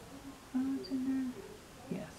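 A woman humming quietly to herself: a few low notes, the two longest held briefly about halfway through.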